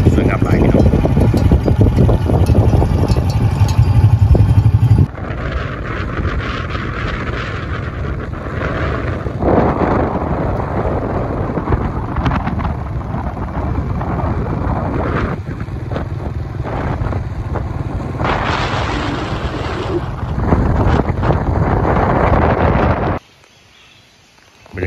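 Wind and road noise from a moving vehicle: a loud, dense rushing with no clear engine note. It changes abruptly several times, dropping sharply about five seconds in, and falls away shortly before the end.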